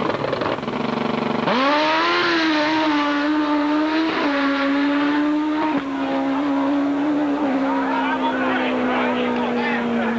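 Drag-racing motorcycle launching off the line and running down the strip. About a second and a half in, the engine note jumps up and holds high, then drops in steps at each gear change as the bike pulls away.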